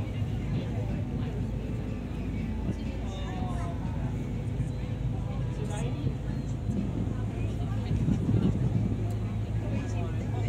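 Ferry engines droning steadily under wind and water noise on the open deck, with people talking faintly in the background.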